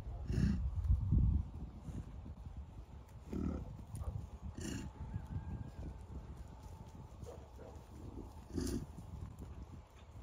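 American bison calling with a few short grunts, over a steady low rumble.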